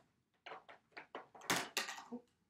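Plastic connecting cubes clicking and knocking together as they are gathered up by hand: a quick string of about seven small clicks, the loudest about one and a half seconds in.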